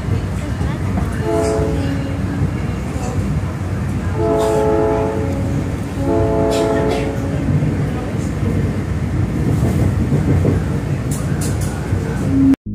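A South Shore Line electric commuter train running with a steady rumble, heard from aboard. Its horn sounds three chord blasts: a short one about a second in, then two longer ones around four and six seconds in.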